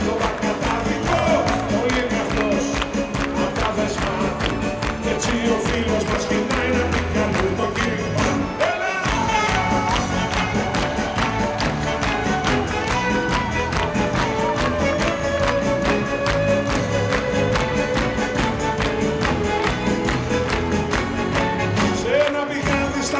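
Live band playing an instrumental passage: a steady, quick percussion beat under long held melody lines.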